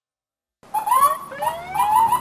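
Emergency-vehicle siren cutting in suddenly out of silence about half a second in: a quick rising yelp repeated about three times a second, with overlapping calls.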